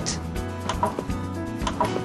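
Background music with a few clicks from a Prestan adult CPR training manikin as its chest is pressed down in slow compressions, fewer than 60 a minute; the built-in clicker sounds when a compression reaches the correct depth.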